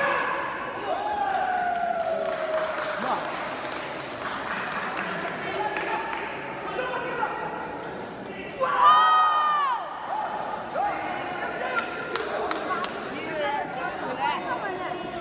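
Coaches and spectators shouting and calling out during a taekwondo sparring bout, with one loud drawn-out yell about nine seconds in. A few sharp smacks, typical of kicks landing on body protectors, come near the end.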